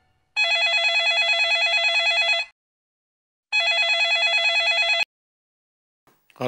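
Landline desk telephone ringing with a fast electronic warble: two rings of about two seconds each, a second apart, the second stopping as the phone is answered.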